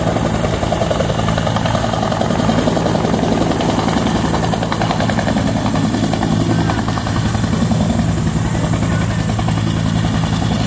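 Bell UH-1 Huey helicopter hovering low and settling in to land, its two-blade main rotor beating steadily and loudly, with a steady high whine over the rotor noise.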